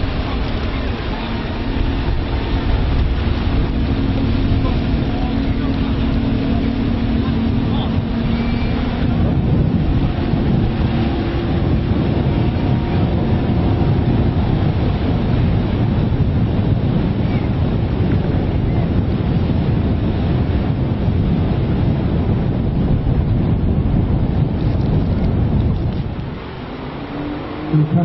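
Outboard engines of an Atlantic-class rigid inflatable lifeboat running at speed as it passes, with rushing water and wind on the microphone. A steady engine tone is clear for the first nine seconds or so, then merges into a denser rumble, and the sound drops away shortly before the end.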